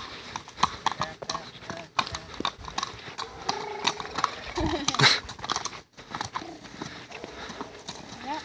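Horse walking on asphalt, its hooves clopping in an even walking rhythm.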